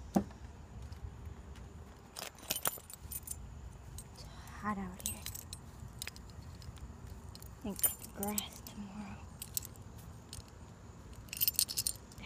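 A bunch of keys jangling in a few short bursts, with a sharp click at the start and the longest jingle near the end. Twice a short voice-like sound comes in, over a steady low rumble.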